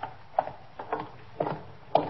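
Radio-drama sound-effect footsteps walking at an even pace, about two steps a second.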